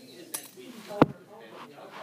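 A light click, then a sharp, loud knock about a second in: the camera being bumped and tipped back.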